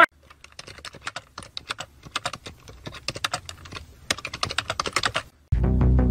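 Rapid, irregular clicking of an armadillo's claws on a hard concrete floor as it scurries along, for about five seconds. Music with a deep bass cuts in loudly near the end.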